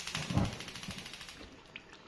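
Gas hob burner being lit under a pressure cooker pot: a hiss with a fine rapid crackle that fades away, and one dull knock about half a second in.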